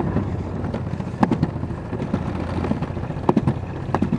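Alpine slide sled running down the concrete track: a steady low rumble with wind on the microphone, broken by a few sharp knocks as the sled jolts along, twice about a second in and again near the end.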